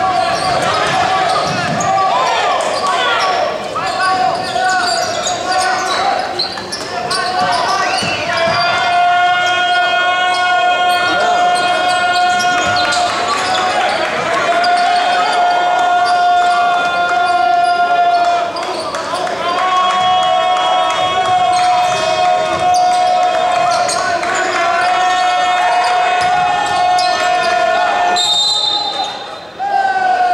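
A basketball being dribbled on a hardwood court in a large, echoing gym, with repeated bounces and voices. Over it, a steady pitched tone with overtones is held for several seconds at a time, four times, starting about eight seconds in.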